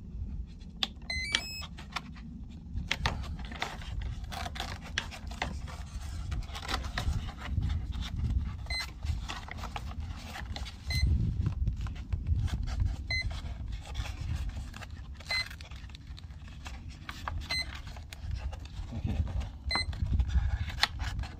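The electric ducted-fan jet's speed controller plays a short rising start-up tune about a second in as the flight battery is connected. From about nine seconds it beeps once every second or so, typical of a speed controller with no throttle signal while the receiver is in bind mode. Wind rumbles on the microphone, and plugs and parts are handled.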